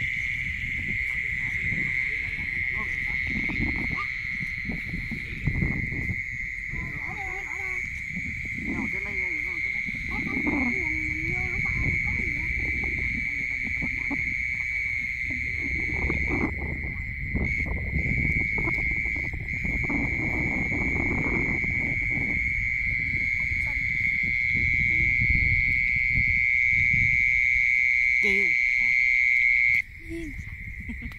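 A night chorus of insects, a steady high-pitched trill that never breaks, with footsteps squelching and rustling along a muddy field bund underneath.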